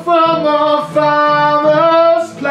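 High sung notes held long and wordless, stepping and sliding between pitches, over acoustic guitar strumming.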